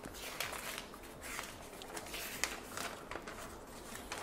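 Folded paper instruction sheet being unfolded and handled, rustling in short, irregular scrapes.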